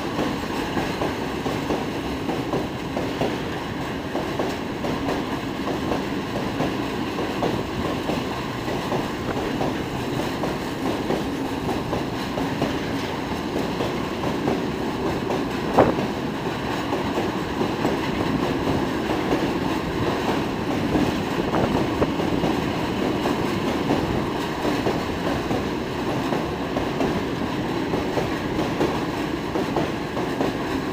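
Heavily loaded railway tank wagons of a long freight train rolling steadily past, wheels running on the rails in a continuous rumble. A single sharp knock sounds about halfway through.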